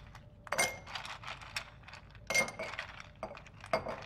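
Ice cubes tipped from a glass bowl into a drinking glass, clinking against the glass and each other in two main runs of clinks, one about half a second in and another past the middle.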